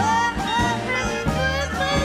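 A female voice singing with vibrato over a small vintage jazz band of upright bass, piano and brass, in a slow New Orleans dirge style.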